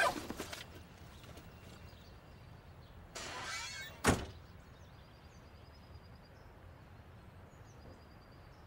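Cloth rustling at the start, then a short rush of noise and a single solid thunk about four seconds in, like a car door being shut. Afterwards faint bird chirps over quiet outdoor ambience.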